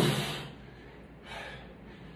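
A man's forceful exhaled grunt ('oof') from the strain of pressing heavy dumbbells, fading out within the first half-second. A shorter, softer breath follows about a second and a half in.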